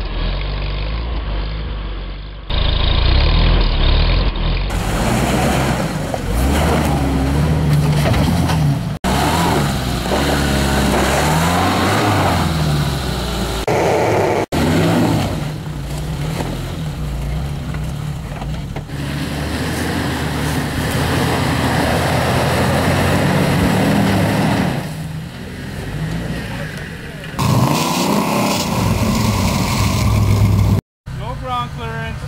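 Off-road 4x4 engines running and revving as they climb, heard in several short clips cut one after another, one of them a Suzuki Samurai. The engine pitch rises and falls with the throttle a few times about a third of the way in.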